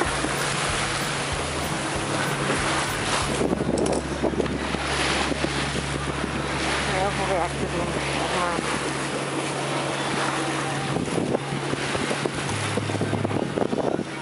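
Wind buffeting the microphone and waves rushing past the hull of a sailing yacht under way in choppy sea.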